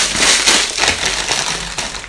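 A clear plastic bag being handled and crinkled, a dense crackling rustle that tapers off near the end.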